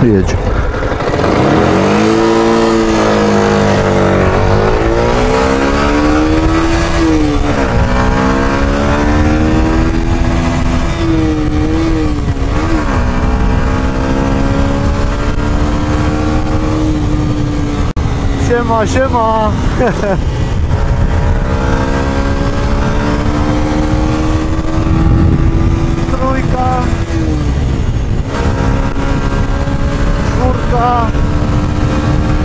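A 2019 Yamaha YZF-R125's single-cylinder four-stroke engine pulls under acceleration while riding. Its pitch climbs through the revs and drops sharply at each of about four gear changes. Wind noise rushes steadily on the helmet microphone.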